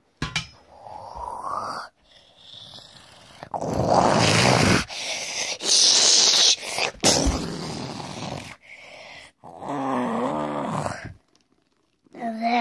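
Monster roars and growls voiced for fighting toy monsters: a series of rough, noisy roars broken by short gaps, loudest in the middle, ending with a wavering growl.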